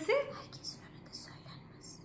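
A woman's voice trailing off at the very start, then a lull with a few faint, short whisper-like sounds.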